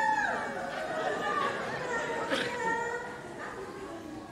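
A performer's voice over a stage microphone, with long gliding pitches, and chatter in the hall behind it.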